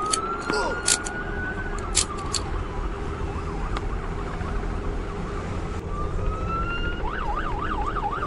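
Police car siren wailing, its pitch rising and then falling slowly, then switching to a fast yelp near the end, over a steady low rumble. A few short clicks sound in the first couple of seconds.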